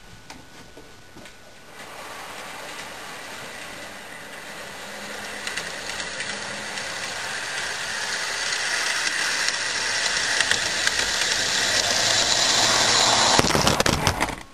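Model Class 67 locomotive's motor and wheels running along the track, getting steadily louder as it comes closer. Near the end comes a clatter of impact as it hits the camera and knocks it over.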